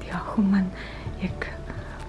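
A soft, low voice speaking over quiet background music.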